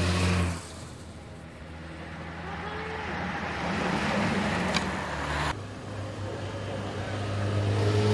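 A motor vehicle's engine running steadily with road and wind noise. The sound changes abruptly about five and a half seconds in, where the footage cuts.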